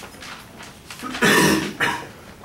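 A person coughing: one harsh burst a little over a second in, then a shorter second one.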